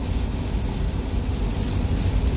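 Steady road noise inside a car's cabin at highway speed on a rain-wet interstate: an even low rumble with a hiss over it.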